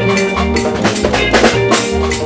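Live highlife band playing an instrumental passage through a PA: a drum kit keeps a steady beat over a bass line and held chords.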